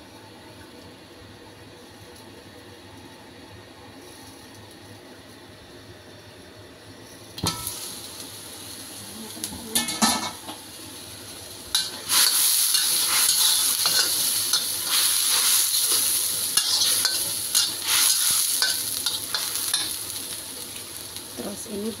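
Minced meat cooking in a little water in a wok over a gas flame. It hisses quietly under the lid at first, then there is a knock of the lid coming off about seven seconds in. From about twelve seconds it sizzles and bubbles loudly while a metal spatula stirs and scrapes the wok.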